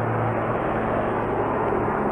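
Steady background noise, an even hiss with a low hum underneath, with no distinct events.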